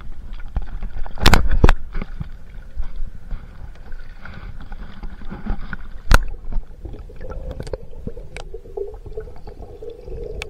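Kayak paddling heard through a camera mounted on the hull: water sloshing and splashing around the boat with the paddle strokes. There is a quick cluster of sharp knocks about a second in and another single sharp knock near the middle.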